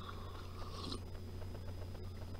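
Faint sip from a mug in the first second, over a quiet room with a steady low hum and a few small clicks and rustles.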